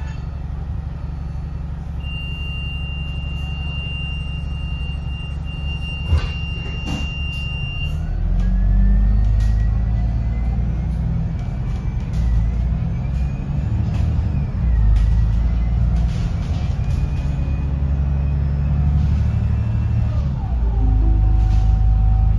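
Alexander Dennis Enviro500 Euro V double-decker bus heard from the upper deck, running steadily with a steady high tone and a single knock about six seconds in. About eight seconds in the bus pulls away: the low rumble grows louder and a whine rises in pitch, dipping twice as it goes.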